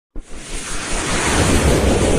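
A rushing whoosh sound effect that builds steadily louder, with a deep rumble underneath. It is the opening riser of an animated logo intro.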